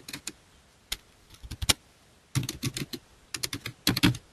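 Computer keyboard typing: single keystrokes at first, then short quick runs of keys with pauses between them.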